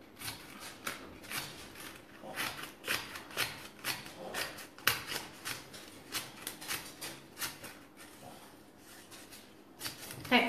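Scissors snipping a row of short cuts into a strip of paper, about two snips a second, stopping a little before the end.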